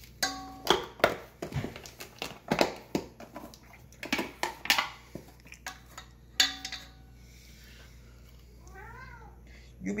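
Plastic measuring spoons clicking and knocking against each other and against a stainless steel mixing bowl, some knocks briefly ringing. Near the end a cat gives a short meow that rises and falls in pitch.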